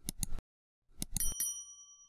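Subscribe-button sound effect: a quick run of mouse clicks, then more clicks about a second in followed by a small bell ding that rings on and fades.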